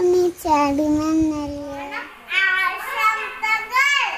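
A young child singing, holding a long steady note; about two seconds in, a higher, brighter child's voice carries on the singing.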